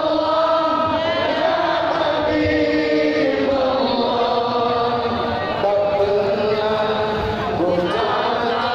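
A large crowd chanting sholawat, Islamic devotional verses in praise of the Prophet, singing together in long, held notes that move slowly from pitch to pitch.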